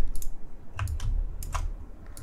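Scattered clicks of computer keyboard keys and a mouse, about eight or nine sharp taps at an uneven pace, as shapes are duplicated and recoloured on the computer.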